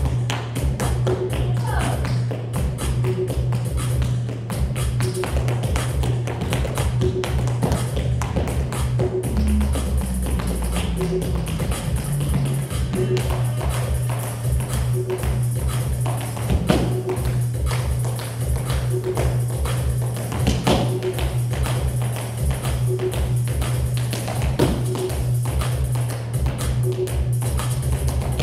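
Tap shoes striking a hard studio floor in quick rhythmic runs of clicks, over background music with a steady beat.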